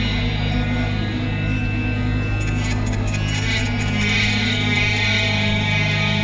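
Sitar being played over a steady low drone.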